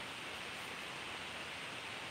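Steady hiss of background noise, even and unchanging, with no other sound in it.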